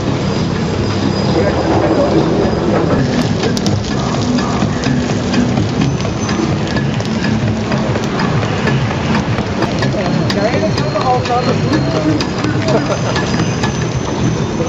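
Loud, steady rushing noise of riding in a large mass of cyclists, with crowd voices and music from a portable sound system mixed in.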